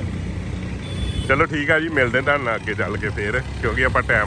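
Steady low running of a ridden two-wheeler's engine, with road noise. A voice talks over it from about a second in.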